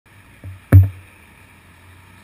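Two knocks, a soft one and then a sharp, loud one with a low thud, over a steady low street hum.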